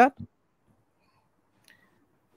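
A man's voice ending a question, then silence, broken only by a single faint click near the end.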